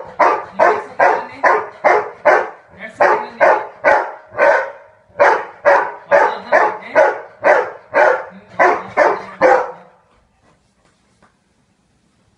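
A dog barking repeatedly, about two barks a second in a long run with a couple of brief pauses, then stopping near the end.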